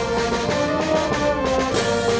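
A mixed band of brass, woodwinds, strings, electric guitar and bass, piano and drums playing together, several held notes changing about every half second, with a short rising swish in the highs near the end.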